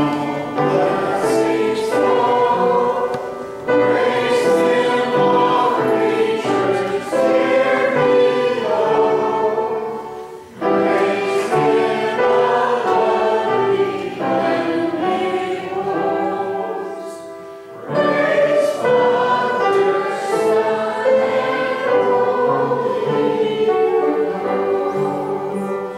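A group of voices singing a hymn together with keyboard accompaniment, in phrases with short breaks about ten and seventeen seconds in.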